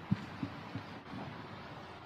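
Three soft, low thumps in quick succession, about a third of a second apart, the first the loudest, over a steady background hiss.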